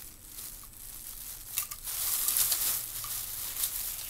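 Crinkling and rustling as a bundle of returned paint brushes is handled and sorted through, growing louder about a second and a half in.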